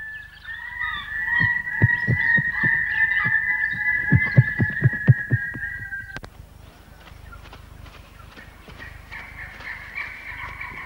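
Cartoon sound effect for a flying fox flying off: a held high tone over a run of soft, low wingbeat thumps, cutting off sharply about six seconds in.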